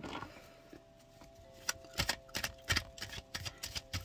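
A deck of tarot cards being shuffled by hand: a quiet start, then from about a second and a half in, a run of short, irregular clicks and taps as the cards strike and slide against each other.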